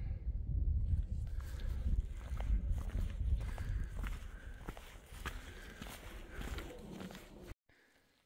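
A hiker's footsteps on a rocky, gravelly trail, steady steps on stone and grit over a low rumble of wind on the phone's microphone. The sound cuts off abruptly shortly before the end.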